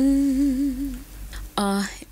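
A singer humming a long held note unaccompanied, with a gentle vibrato, fading out about a second in. A short vocal sound follows near the end.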